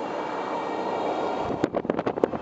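Steady road noise of a car driving: engine and tyres on a rough road. About one and a half seconds in, wind starts buffeting the microphone in irregular gusts.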